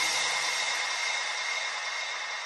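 A breakdown in a house-music mix: the kick drum has stopped and a white-noise hiss with a faint high held tone is left, slowly fading.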